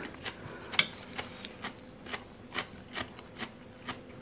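Crisp crunching of raw cabbage in a beetroot marinade being chewed, about two crunches a second in a steady chewing rhythm, the sharpest about a second in.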